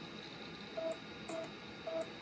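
3.5-inch floppy drive of a Compaq Concerto reading a file off the disk: three short, faint buzzing tones about half a second apart, with light clicks, over a steady hiss.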